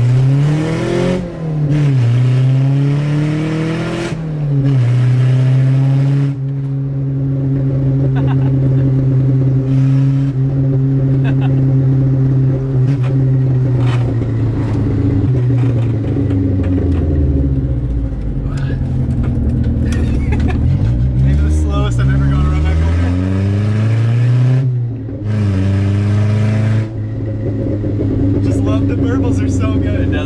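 Toyota Corolla TE72 wagon's four-cylinder engine on open headers with no exhaust, heard from inside the cabin. It revs up, holds a steady drone while cruising, then falls away on deceleration with popping burbles before pulling again.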